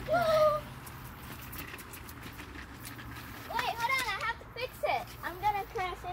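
A child's short, high vocal exclamation right at the start, then after a few quiet seconds a stretch of children's wordless vocalizing and chatter. Faint scattered clicks and a low steady hum lie underneath.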